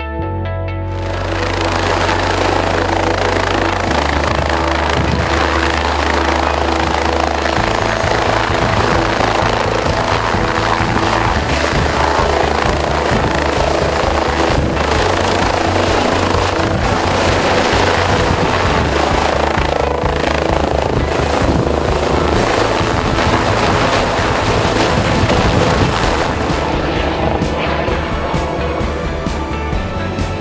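Helicopter lifting off and flying away, its loud rotor and engine noise mixed with background music that has a steady bass line; the helicopter noise fades out near the end.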